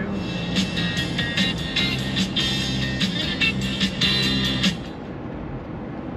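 Music with a beat playing on the 1996 Cadillac Fleetwood Brougham's factory stereo, heard inside the cabin over the hum of the car driving. The music cuts off suddenly a little before the end, leaving only the road and engine hum.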